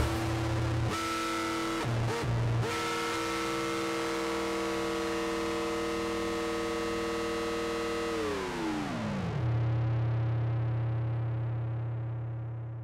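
Live amplified band music ending on a held, effects-laden chord from cello and mallet keyboard. About eight seconds in, the chord slides down in pitch and settles into a low drone that slowly fades.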